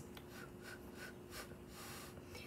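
Faint breathing and small handling noises: a few soft clicks, with a breathy hiss near the end, over a faint steady hum.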